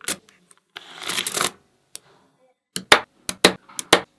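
Small magnetic balls clicking as they snap onto a slab of magnet balls. A brief rattling scrape comes about a second in. In the last second or so a quick run of sharp clicks follows as a strip of balls is pressed into place.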